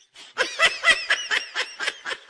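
A person laughing: a quick run of short 'ha' bursts, about four a second, starting about half a second in and tailing off.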